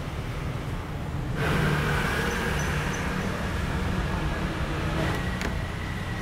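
Street traffic noise: a steady road rumble and hiss that grows louder about a second and a half in and stays up.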